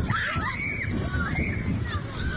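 Children screaming and shouting in panic, several high wavering screams one after another, over a low rumble of wind and water, as a large tuna thrashes and splashes in the shallows close by.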